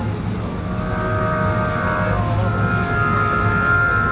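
Instrumental backing music playing long held chords over a steady low drone, with the chord shifting about halfway through and no singing.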